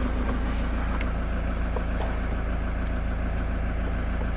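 Toyota Land Cruiser's 3.0-litre D-4D four-cylinder diesel idling steadily, heard from inside the cabin, with a light click about a second in.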